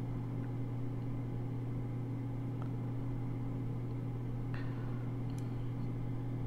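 Steady low background hum with a few faint small ticks.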